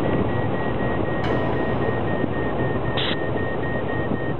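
Steady airflow rush inside the cockpit of the Sunseeker Duo solar airplane in flight, with a high electronic tone beeping in quick, even pulses, typical of a glider variometer signalling lift. A short burst of noise cuts in about three seconds in.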